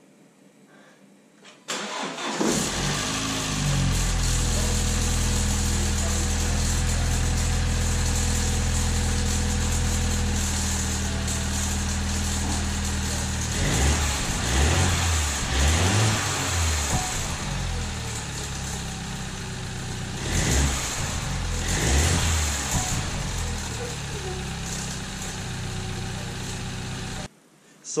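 BMW B48 2.0-litre turbocharged four-cylinder engine starting about two seconds in, then idling steadily. Around the middle it is blipped several times, and twice more a little later, before the sound cuts off suddenly near the end. The owner says it still sounds like crap even with the replacement wastegate actuator fitted, and thinks the whole turbo is the problem.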